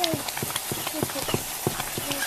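A ladle stirring cooking nettle greens in a black metal kadhai, knocking and scraping against the pan about four times a second.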